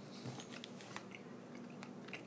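Faint chewing of a jelly bean: soft, scattered wet clicks from the mouth.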